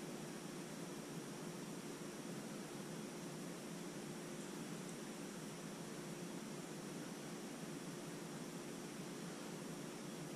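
Steady hiss of background noise with a faint, even hum and no distinct events: room tone through a GoPro's built-in microphone.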